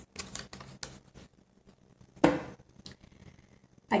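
Tarot cards being handled: light clicks and ticks of cards flicking against each other, with one sharper tap a little past two seconds in.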